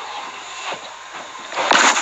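Steady hiss, then near the end a loud rustling burst as the phone's microphone is handled.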